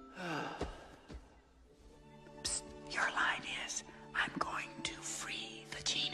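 A voice whispering over soft background music with held tones, opening with a short falling glide.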